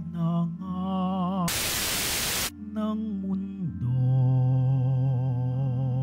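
Slow communion hymn: a voice singing with vibrato over sustained low accompaniment notes. About one and a half seconds in, it is cut by a loud burst of static noise lasting about a second.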